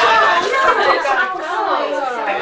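Several voices talking over one another, indistinct chatter.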